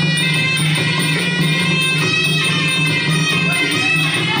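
Traditional Kun Khmer fight music: a wavering, reedy melody that slides in pitch over a steady, evenly pulsing drum beat.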